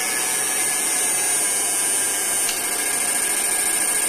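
Cooling fans on an electric fish-shocker inverter running steadily, giving an even airy noise over a thin high-pitched whine. These are add-on fans fitted so the unit stays cool while it runs at high output frequency.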